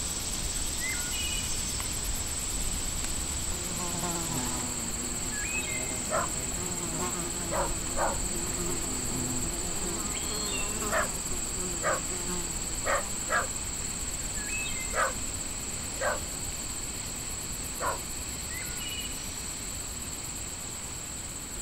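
Steady high-pitched insect buzzing, with about a dozen short sharp chirps scattered through and a few brief rising calls.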